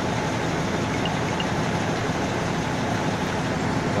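Truck-mounted crane's engine running steadily while the crane lifts a tower pole section.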